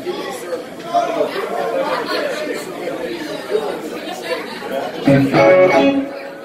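Electric guitar played in short phrases over bar-room crowd chatter, with a louder held note near the end.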